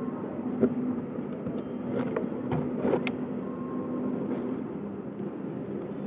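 Steady low rumble with a faint constant hum, broken by a few light knocks and clicks about half a second, two and three seconds in.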